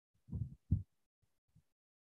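Two short, soft, low thumps about half a second apart, followed by a few fainter ones, heard over a video-call line.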